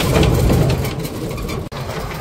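Low rumble of wind and road noise in the open cab of a moving electric cargo three-wheeler, with no engine note, cut off abruptly near the end.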